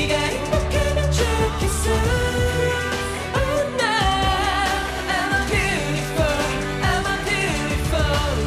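Korean pop song performed live: a male voice singing over a backing track with a sustained low bass line and light percussion.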